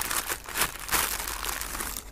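Paper seed packet crinkling and rustling as it is handled, a dense run of irregular crisp crackles.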